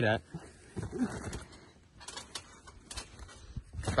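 A person bouncing on a large outdoor trampoline, heard faintly: a few short, sharp knocks about two to three seconds in as the jumper builds height for a flip.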